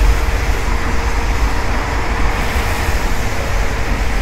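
Steady low rumble of rail and road traffic around an elevated metro line, with no single event standing out. A faint steady hum fades out in the first second or so.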